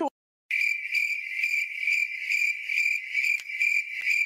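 Crickets chirping: a steady high-pitched trill that starts about half a second in and keeps on without a break.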